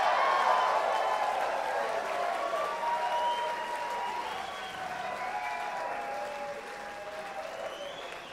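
Concert audience applauding and cheering, with shouting voices, fading down gradually.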